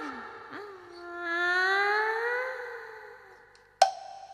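A female Cantonese opera voice draws out a long stylised spoken call (大王呀, "My lord!"), its pitch rising slowly and then fading. A sharp percussion strike comes near the end, as the accompaniment comes in.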